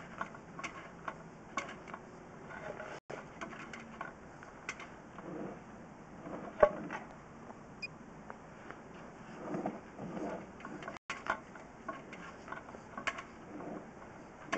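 Scattered clicks and ticks from a drain inspection camera's push cable and reel as the camera is drawn back through the pipe, with one sharp click about six and a half seconds in that is the loudest.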